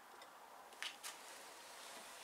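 Two short, light wooden clicks about a second in, a quarter-second apart: a wooden stick knocking against the small wooden block it is being fitted into.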